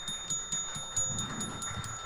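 Low room noise of a seated audience: a faint murmur and a few small knocks and clicks, over a faint steady high electronic tone.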